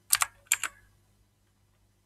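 Computer keyboard keystrokes: four quick key clicks in two close pairs within the first second.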